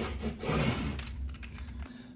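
Wooden hand roller pressed hard and rolled along an adhesive Velcro hook strip to push out bubbles, an uneven rubbing and scratching with small ticks. It stops shortly before the end.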